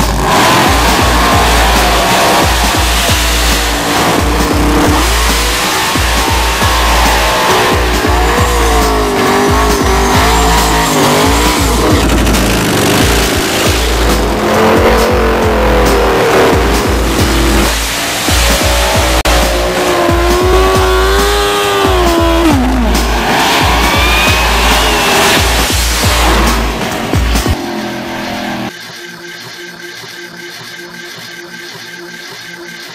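A montage soundtrack: music with a heavy, regular beat mixed with drag-racing engines revving and tyres squealing in burnouts. Near the end the engine sounds stop and the music carries on quieter.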